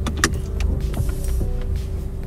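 Car engine running, heard inside the cabin as a steady low rumble, with two sharp clicks in the first quarter-second.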